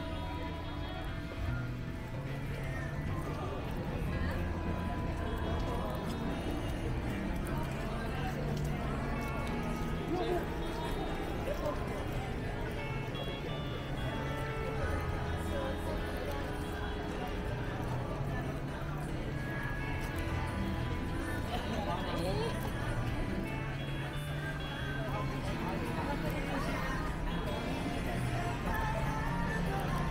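Busy pedestrian street ambience: music with a steady bass line playing over the chatter of a passing crowd and footsteps on wet pavement.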